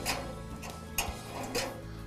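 A few separate light metallic clicks and clinks as a 3/8 wrench and loose nuts work free the steel eye bolts holding a grill's pilot tube, over a steady low hum.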